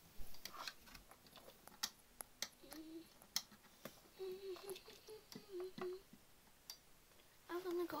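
Small scattered clicks and taps of a charger cable and plug being handled and pushed into a power adapter, with a few short, low hummed murmurs in the middle.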